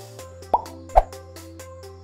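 Logo-sting intro music with a light ticking beat, about four ticks a second, over steady low tones, with two plop sound effects about half a second apart, the second the loudest.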